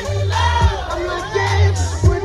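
Dance music played loud over a DJ's sound system, with a deep, thumping beat and bass, and a crowd of guests shouting and cheering over it.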